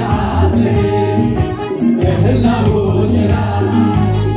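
A congregation and a group of women singers singing a gospel worship song together, over an electronic keyboard accompaniment with a steady bass line.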